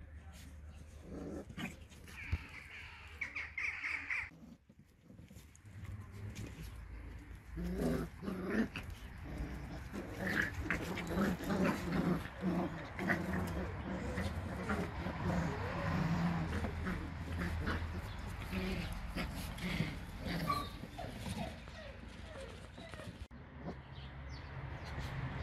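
Malinois puppies play-fighting, with puppy growls and small barks that come thick and fast from about eight seconds in.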